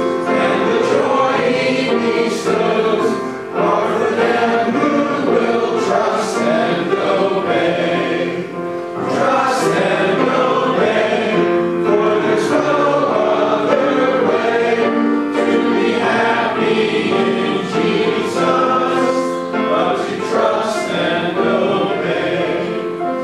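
A congregation singing a hymn together, with a man's voice leading. The singing runs on with brief dips between lines.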